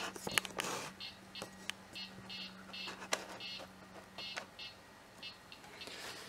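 Amiga disk drives seeking and reading while Workbench 1.3 boots: a run of short, irregular buzzing steps and sharp clicks, two or three a second, over a steady low hum.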